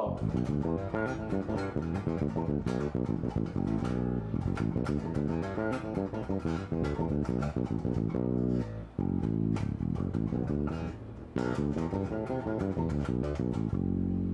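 Electric bass guitar playing a fast, even run of single plucked notes: a four-fingers-on-four-frets sequence stepping through the notes across the strings, with brief breaks about nine and eleven seconds in.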